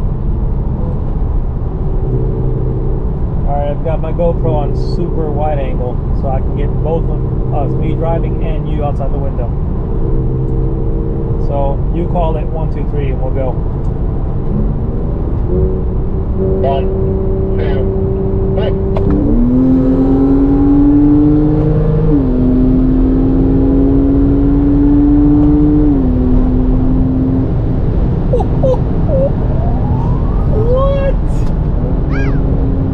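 Porsche 911 flat-six engine heard from inside the cabin, over steady road rumble. About two-thirds of the way through it revs up sharply and pulls hard under acceleration, with its pitch dropping at two upshifts a few seconds apart.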